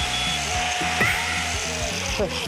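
Electric angle grinder running with a steady whine that sinks slightly in pitch near the end, under background music, with a sharp click about a second in.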